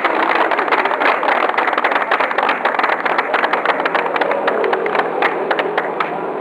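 A crowd applauding, the claps thinning out toward the end. A vehicle engine runs underneath in the second half.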